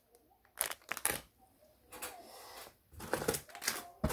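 Small plastic craft packets being handled: a few light clicks and crinkling rustles, with a quieter stretch in the middle and more rustling near the end.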